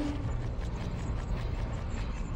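Sound effect of turning clockwork gears: a steady run of ratcheting clicks over a low mechanical rumble.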